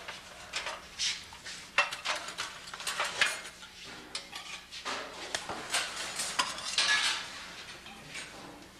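Dishes and utensils clattering as they are handled, in a rapid, irregular run of clinks and knocks.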